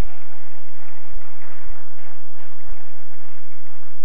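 Steady hiss of a large hall's room noise, with a few soft low thumps as a congregation sits down and settles into its chairs.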